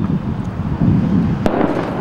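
Loud rumbling, crackling noise from a handheld camera's microphone as it moves along with the walkers, with one sharp crack about one and a half seconds in.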